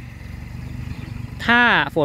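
A low, steady engine rumble in the background, growing slightly louder; a man's voice comes in about one and a half seconds in.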